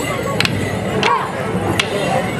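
Wooden Morris sticks clashing together in time with the dance, three sharp clacks a little over half a second apart, over accompanying folk dance music.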